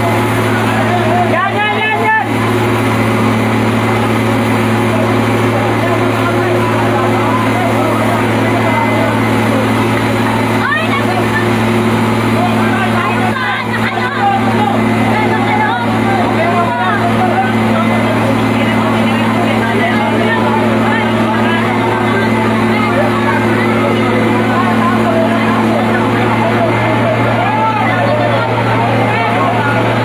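Fire truck engine running steadily to drive the hose pump, a constant low drone, with many people shouting and talking over it.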